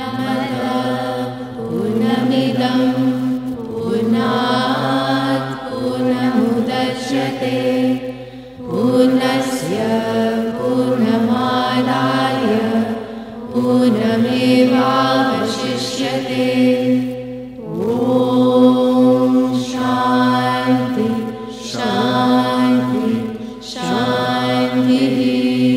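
Several voices chanting a devotional melody in phrases of a few seconds each, with short pauses between them, over a steady held drone. The drone is most likely the harmonium on stage.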